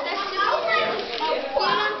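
Several children's voices talking and calling out over one another in a group at play.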